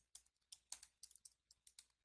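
Faint typing on a computer keyboard: quick, irregular keystrokes.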